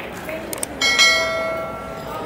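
A bell-like metallic ring, struck twice in quick succession about a second in, ringing on with several clear tones and fading away.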